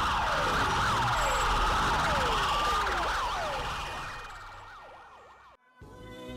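Emergency-vehicle sirens, several overlapping wails sweeping down in pitch over and over. They fade away from about halfway through, and music starts right at the end.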